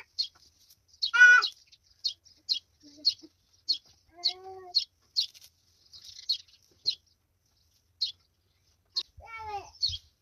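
Birds chirping in a steady series of short, high chirps about twice a second, with a few lower pitched calls among them, the loudest about a second in.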